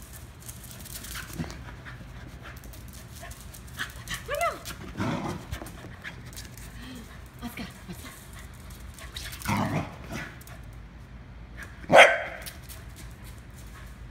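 Corgi giving a few short, scattered barks and yips, one with a gliding whine-like pitch about four seconds in; the loudest, sharpest bark comes about twelve seconds in.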